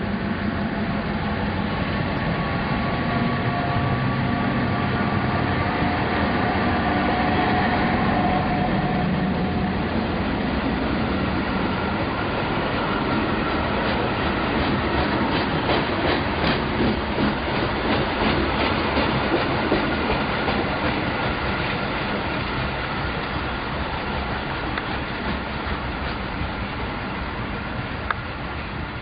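A railway work train of yellow track-maintenance machines and ballast hopper wagons rolling past. Steady engine hum in the first several seconds, then clickety-clack of wheels over the rail joints in the middle, fading as the train moves away near the end.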